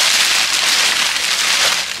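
Crumpled packing paper crinkling and rustling steadily as it is unwrapped by hand. It is louder than the talk around it and eases off near the end.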